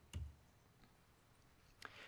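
Near silence in a quiet room, broken by two soft clicks: one with a slight low thump just after the start, another near the end.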